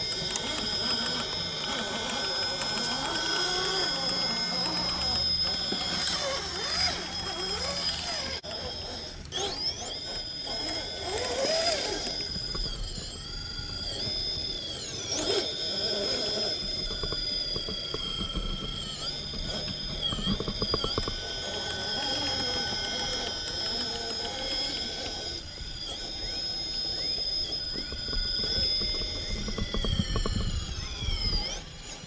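An RC rock crawler's 3BRC Yellowjacket 2000kv brushless motor and Stealth X transmission whining steadily as it crawls over rock. The pitch sags and rises now and then as the throttle and load change.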